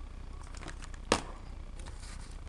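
Quiet handling noises with one sharp click about a second in, over a low steady hum.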